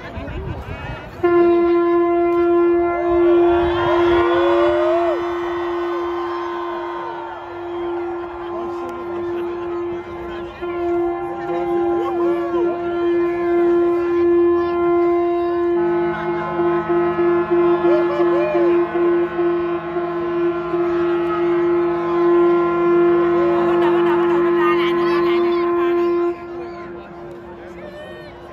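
Ship's horn sounding one long continuous blast; about two-thirds of the way through a second, lower horn joins it in a chord and stops shortly before the end, while the first keeps sounding.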